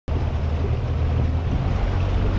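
Boat engine running steadily at slow speed, a low drone, with wind rushing over the microphone.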